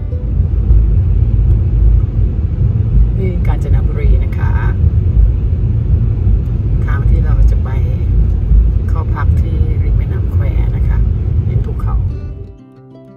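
Car driving on an open road, heard from inside: a loud, steady low rumble of road and wind noise, with short snatches of voices a few times.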